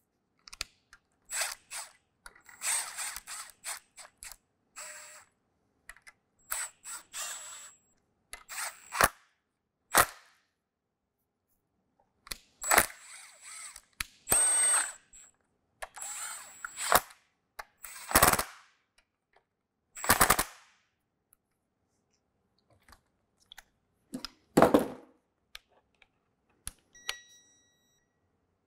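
Hand tools and metal parts being worked on a GM 3.6L V6 as the timing chain tensioner is fitted: scattered sharp metallic clicks and clinks, with a few short ratchet-wrench rattles, separated by quiet pauses.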